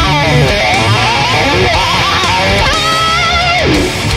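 Jackson Kelly KEXQ electric guitar with EMG Bone Breaker humbuckers, played through a VHT Pittbull Ultra Lead amp for a distorted high-gain metal lead: fast picked runs, then a held note with vibrato that drops sharply in pitch near the end.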